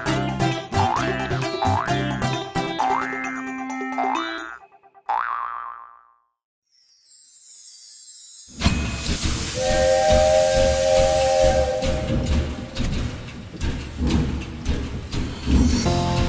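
Cartoon boing sound effects, a springy rising glide repeated about once a second over bouncy children's song music, which then fades to a moment of near silence. About eight and a half seconds in, a new children's tune starts suddenly with a hiss like steam and a held cartoon train whistle chord lasting about two seconds.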